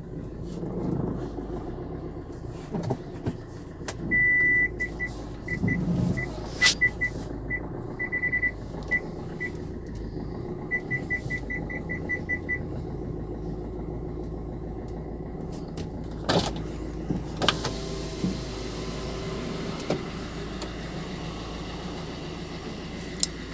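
Maruti Suzuki Ertiga running at idle, heard from inside the cabin as a steady low hum. About four seconds in the car's electronic warning beeper sounds one longer tone, then scattered short beeps, then a quick even run of beeps around eleven to twelve seconds. Two sharp knocks come about two-thirds of the way through.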